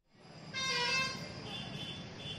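Road traffic noise with a vehicle horn sounding briefly about half a second in, followed by fainter, higher tones.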